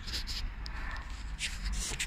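Hands rubbing and shifting a cloth shop rag, in short hissy bursts near the start and again near the end, over a faint low hum.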